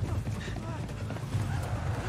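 TV drama soundtrack from a chase scene, heard through the room's speakers: rapid running footsteps and a man's voice calling out, over background music.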